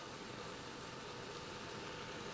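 Faint, steady hiss with a faint steady hum tone underneath, without change.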